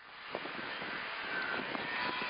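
Wind buffeting the microphone over the distant drone of a small snowmobile engine. The sound climbs over the first second, then holds steady.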